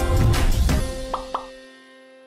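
Advert jingle music with a beat, ending: two quick rising plop sound effects a little past one second in, then a held chord fading away.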